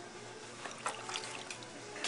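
Faint background music under a few short, wet splashing and dribbling sounds from water and wet clay being handled on a potter's wheel. The strongest comes near the end.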